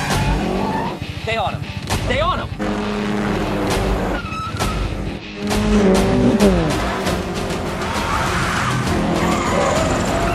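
Film car-chase sound mix: car engines revving and tyres squealing over the score music. The squeals come about one to two seconds in, and near the middle a vehicle rushes past with a falling pitch.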